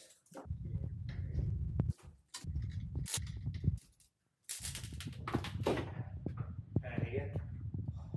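Low rumbling noise on the camera microphone as it is carried around, with scattered clicks and crunches of footsteps on broken glass and debris. A few quiet voices are heard. The sound cuts out completely for a moment about four seconds in.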